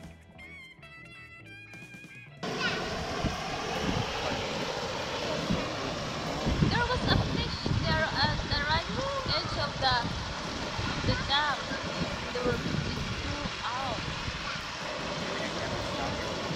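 Soft plucked-string music, then from about two and a half seconds in a steady rush of water pouring over a curved concrete dam spillway into the churning pool below.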